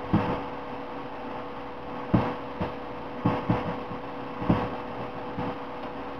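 A steady electrical hum with about half a dozen short, scattered knocks and bumps, likely from handling things on a tabletop.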